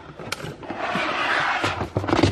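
Plastic storage bins being shifted on a wooden cabinet shelf: a click, then a scraping slide lasting about a second, with a few knocks near the end.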